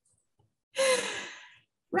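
A person's long, audible sigh: one breathy exhale with a falling tone, lasting just under a second and starting a little before the middle. It is a deliberate deep breath of exasperation.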